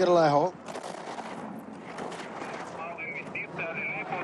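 Ski edges carving and scraping over hard, icy snow during a giant slalom run: a rough, crackly scraping hiss. A thin steady high tone joins in near the end.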